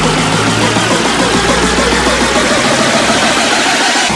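Electronic dance music build-up: a synth sweep rising steadily in pitch over a fast drum roll, with the bass dropping away in the second half. It leads into the drop, where a pulsing beat comes back in at the very end.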